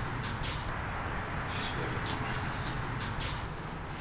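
Steady low rumble of room background noise, with a few faint, short ticks scattered through it.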